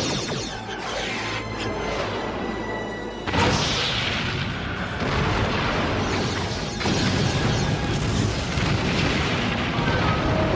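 Film score under space-battle sound effects: weapons fire and explosions, with a sudden loud boom about three seconds in and another swell about seven seconds in.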